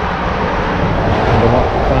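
Steady rushing noise, even across low and high pitches, with a man's voice starting near the end.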